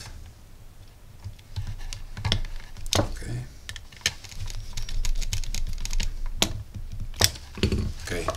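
Small screwdriver clicking and scraping in the screw terminal of a DC-DC buck-boost converter board as a wire is fastened, with light taps from handling the board and its plastic case. The clicks come irregularly; the sharpest are about three, six and a half and seven seconds in.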